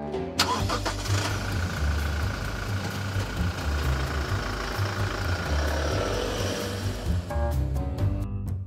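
A pickup truck's engine starts about half a second in and runs as the truck pulls away towing a boat trailer, with background music playing over it.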